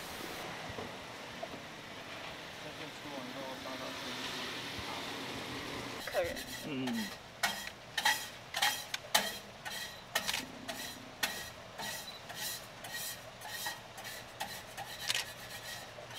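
Food frying on a griddle: a steady sizzling hiss, then a quick, irregular run of sharp clicks and taps from cooking utensils, with a brief voice about six seconds in.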